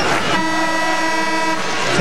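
Arena scorer's-table horn sounding one steady blast of a little over a second, signalling a substitution, over crowd noise.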